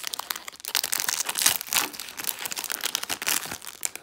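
Plastic blind bag crinkling in the hands as it is opened: a quick, irregular run of crackles, loudest about a second and a half in.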